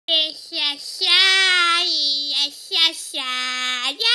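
A boy's high voice singing in several short phrases with brief breaks between them, the pitch gliding and the last note held steady for nearly a second.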